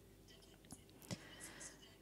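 Near silence in a pause between a woman's sentences, with faint mouth noises and breath and two small clicks in the middle.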